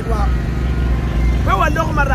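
A man speaking in short phrases, with a pause in the middle, over a steady low rumble.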